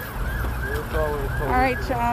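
A siren sounding outdoors, its pitch sweeping up and down in quick repeated cycles, about three a second.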